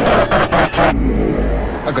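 Loud rushing roar of a jet aircraft passing at speed, the high hiss cutting off abruptly about a second in and leaving a low rumble.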